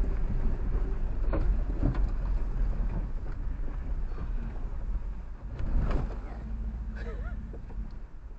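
Off-road vehicle heard from inside the cab, crawling slowly down a rocky bank into a river crossing: a steady low engine and drivetrain rumble with a few sharp clunks from the suspension and tyres over rocks.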